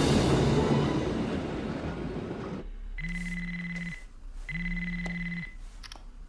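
Music that fades out over the first two and a half seconds, then a phone ringtone ringing twice, each ring about a second long with a trilling high tone.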